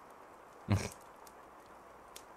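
A man's single short, breathy huff about a second in, like a soft laugh through the nose, over a faint steady hiss.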